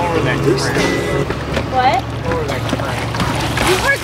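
A pontoon boat's motor runs steadily under music and voices from a radio on board.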